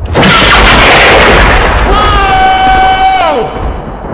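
A loud crashing boom sound effect, followed by a steady high-pitched tone lasting about a second and a half that slides down in pitch and cuts off.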